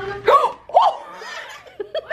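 Laughter in two short, high bursts about half a second apart, followed by quieter laughter.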